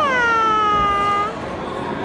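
A toddler's high-pitched squeal: one long falling note that stops about a second and a half in, over the chatter of a busy dining room.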